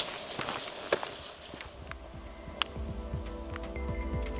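A few footsteps on a forest path in the first second, then background music fades in about halfway through and builds, with held tones over a low pulse.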